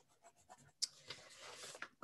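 Faint handling of paper on a desk: a click a little under a second in, then a soft scratchy rustle.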